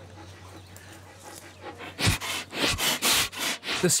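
Sloth bear snuffling right at the camera: after a quiet start, a quick run of loud breaths, about three a second, in the second half.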